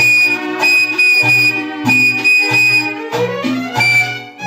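Instrumental passage of a Cuban charanga orchestra playing a bolero: a flute holds long high notes over violins and a bass that repeats a low note about twice a second.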